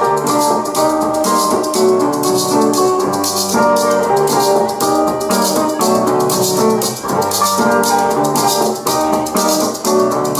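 Acoustic band playing an instrumental passage: a shaker rattles a steady rhythm over strummed acoustic guitar and a small four-string guitar.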